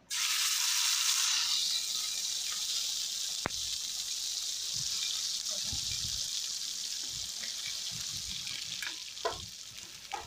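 Ground masala paste dropped into hot oil in a pan, sizzling loudly at once and then frying with a steady hiss that slowly fades. A spoon knocks and stirs in the pan in the second half.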